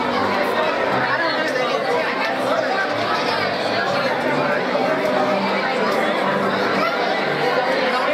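Church congregation chatting as they greet one another: many overlapping voices at once, steady throughout, in a large reverberant sanctuary.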